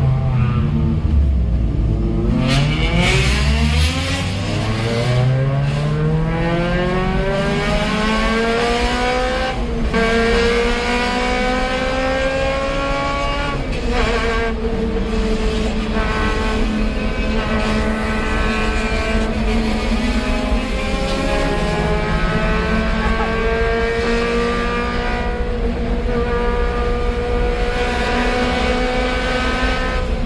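Car engine heard from inside the cabin, accelerating hard through the gears: the revs climb for several seconds, drop at upshifts about ten and fourteen seconds in, then hold high and steady at speed with a brief dip and pickup later on.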